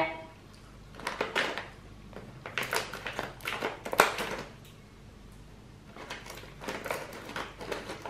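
Plastic snack bag of banana chips crinkling as it is handled and cut open with scissors: a run of sharp crackles and snips, the loudest about four seconds in, then more crinkling as a hand reaches into the bag.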